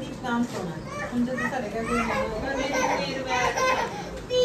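Young children's voices, talking and chattering while they play.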